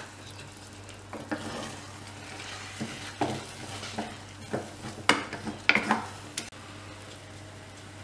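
Wooden spoon stirring thick risotto in a saucepan, making irregular scrapes and knocks against the pot that stop about six and a half seconds in.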